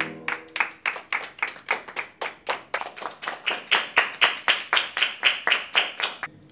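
Hands clapping together in a steady, even rhythm, about four claps a second, growing slightly louder. A keyboard note fades out just as the clapping begins.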